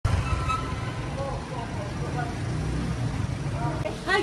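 Steady low rumble of road traffic on a city street, with faint voices in the background.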